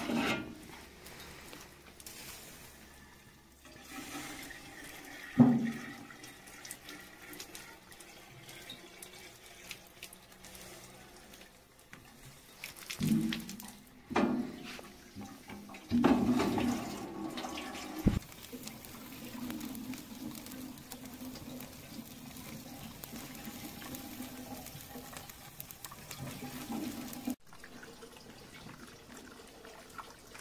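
Water running from a barrel's tap into a square metal tin, a steady splashing stream as the tin fills. A few sharp knocks sound over it, the loudest about five seconds in.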